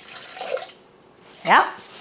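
Water pouring from a glass bottle into a Thermomix's stainless-steel mixing bowl, trailing off and stopping within the first second as about 500 g of water for steaming is filled in.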